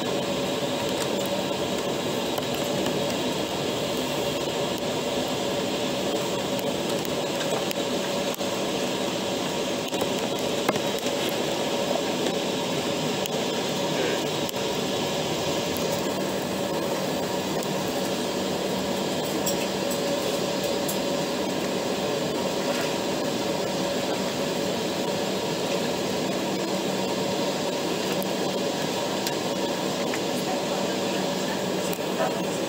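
Steady cabin noise inside an Embraer ERJ 195 airliner taxiing: its turbofans at low power and the cabin air conditioning give an even hum with several constant tones.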